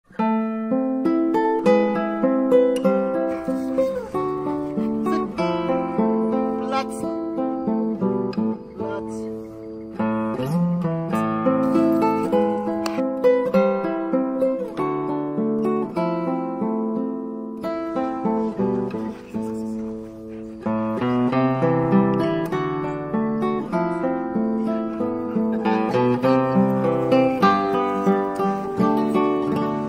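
Background music led by plucked acoustic guitar, a run of picked notes and chords that goes on without a break.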